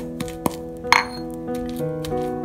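Stone pestle knocking against the inside of a new stone mortar as it is being seasoned, a few sharp clinks with the loudest about a second in, over background music.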